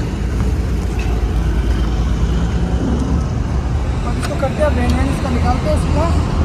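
Steady low noise of road traffic, with faint voices in the background.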